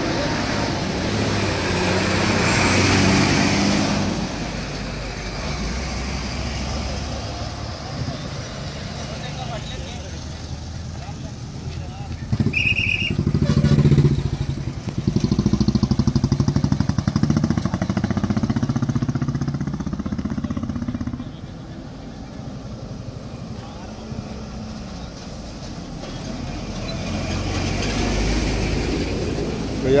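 Passing road traffic: motorcycle and car engines going by in the next lane, loudest in a stretch of engine drone from about 12 to 21 seconds in. A short high beep sounds about 13 seconds in.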